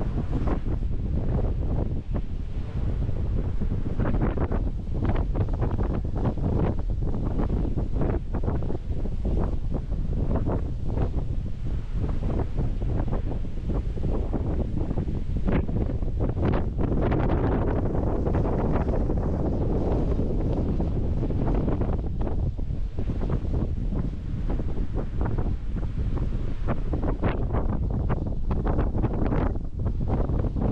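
Strong, gusting wind buffeting the camera's microphone: a constant low rumble broken by rapid flutters and thumps.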